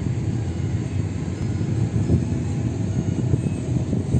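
Moving car: steady low rumble of road and engine noise as it drives along.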